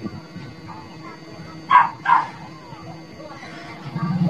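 A dog barking twice in quick succession, two short barks a little under two seconds in, over a faint steady hum.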